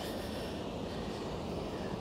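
Steady outdoor background noise, an even low rumble and hiss with no distinct events.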